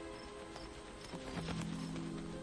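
Soft background score of held music notes, with lower notes coming in about a second in, over a faint repeating cricket chirp; a few short clicks sound around the middle.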